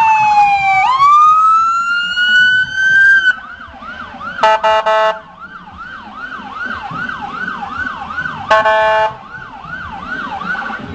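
Police car siren in a slow wail, falling then rising in pitch, that switches after about three seconds to a quicker, quieter yelp sweeping up and down about twice a second. Two short horn blasts cut through the yelp, one near the middle and one near the end.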